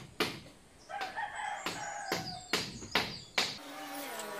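Sharp knocks, about three a second, from work on a bamboo coop frame: a couple at the start, a pause, then a run of five. A rooster crows one long crow from about a second in.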